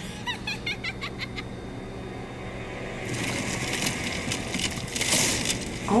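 Anime action-scene soundtrack: a few short high chirps in the first second or so, then a swelling rush of noise that builds from about halfway and is loudest near the end.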